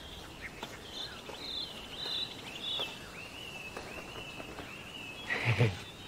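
Birds chirping in a quick run of short high calls over open-air ambience, with a brief louder voice-like sound near the end.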